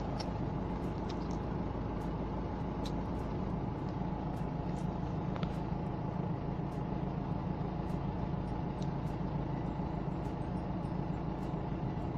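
Steady engine and road noise heard inside a moving car's cabin: an even low hum with a few faint clicks scattered through it.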